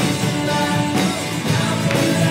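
Live worship music: an acoustic guitar accompanying singers with held sung notes.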